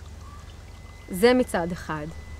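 A woman's voice, starting about a second in with a brief laugh and then speaking, over a steady low hum.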